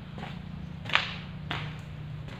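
Footsteps on a hard floor: sharp slaps about every half second, the loudest just before a second in.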